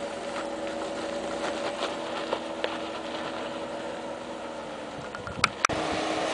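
Jeep Wrangler JK engine running at a low, steady speed as it crawls over rock, with scattered small knocks and two sharp clicks near the end.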